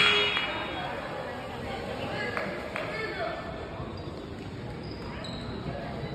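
Basketball game sounds in an echoing gym: a few scattered ball bounces on the hardwood court and brief sneaker squeaks, with spectators' voices in the background.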